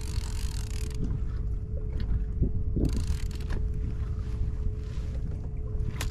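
Wind rumbling on the microphone over water around a kayak, with a faint steady hum. Two short hissing rushes and a few light clicks break through, one rush at the start and one about three seconds in.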